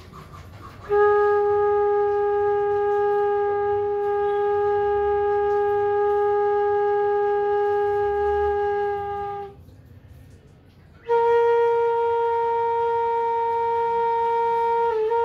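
Bansuri (Indian bamboo flute) holding one long steady note for about eight seconds. After a short pause for breath it plays a second long note, a little higher.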